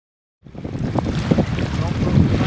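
Silence, then about half a second in, a sudden start of wind buffeting the microphone over the wash of the sea against a rocky shore.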